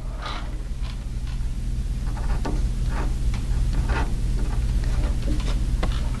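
Short, scattered scratches and ticks of a pen on paper as a finished print is signed, over a steady low hum.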